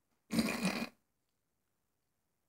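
A short non-word vocal noise from a person, lasting about half a second.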